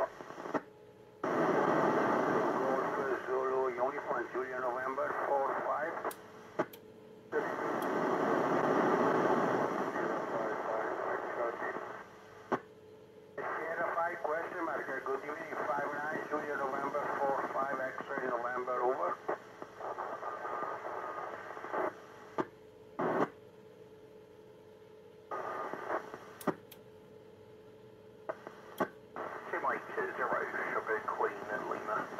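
Amateur FM radio reception of the International Space Station's onboard FM repeater during a pile-up: several stations' voices come through over one another, thin and too garbled to follow, with hiss. The signal drops out completely several times for under a second, and the voices turn weaker and noisier over the last several seconds, with a faint steady tone underneath from about halfway.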